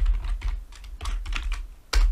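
Computer keyboard keys being typed: a quick run of separate keystrokes, with one louder click near the end.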